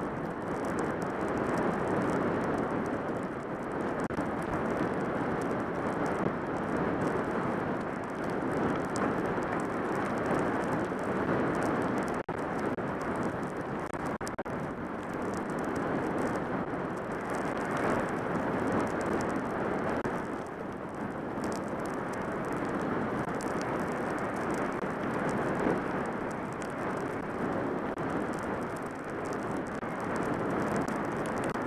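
Steady rush of wind past a worn camera's microphone, mixed with skis sliding and hissing over groomed snow as a skier glides downhill.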